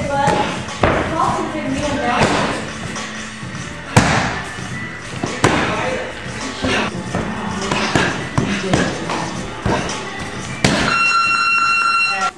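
Bare-fist punches and strikes landing on a held padded striking bag, a run of irregular thuds and slaps, loudest about four seconds in. A steady high tone sounds for about a second and a half near the end.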